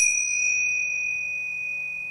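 A small meditation bell struck once, ringing on in a single high, clear tone that slowly fades.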